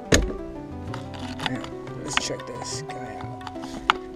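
Background music, with a loud knock just after the start and a sharp click shortly before the end: plastic dashboard trim panels of a 1998 Mitsubishi Galant being pressed back into place by hand.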